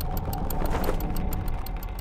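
Chain-and-sprocket mechanism running, with a rapid, even ticking over a low rumbling drone.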